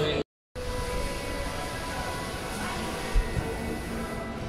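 Steady indoor ambience of a cinema lobby: an even hum and hiss with faint background music and voices. The sound drops out briefly just after the start, and there is a single thump about three seconds in.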